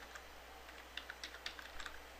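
Faint keystrokes on a computer keyboard as a word is typed: several separate key taps, coming faster in the second half.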